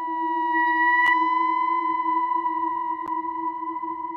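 Ambient synthesizer drone music: several steady, held tones with no beat, one of them rising slightly at the start. A faint click comes about a second in and another around three seconds.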